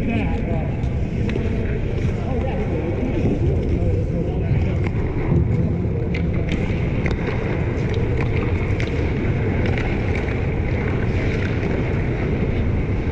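Ice hockey play heard from behind the net: a steady low rumble under scattered sharp clicks and clacks of sticks, skates and puck on the ice, with faint players' voices in the first few seconds.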